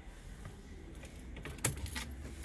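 A bunch of car keys jingling, with a quick run of small clicks as the ignition key is turned in the lock, mostly in the second half.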